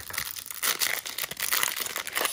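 The foil-lined plastic wrapper of a trading card pack being torn open and crinkled by hand, a continuous crackly rustle with many small snaps.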